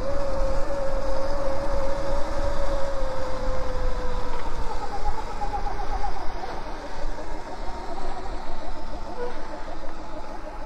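Electric dirt bike motors whining while riding: a steady tone that slowly drops in pitch over the first few seconds, then a higher, wavering tone from about halfway, over low wind noise on the microphone.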